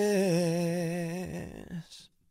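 A male lead voice holds the song's final sung note alone, with no accompaniment and a wavering vibrato. It fades out about a second in, with a brief trailing tone just before the end.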